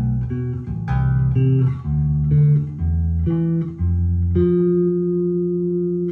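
Jazz Bass-style electric bass playing single plucked notes of an A minor scale in octaves, each low note followed by the same note an octave higher, about two notes a second. The run ends on a note held for about a second and a half.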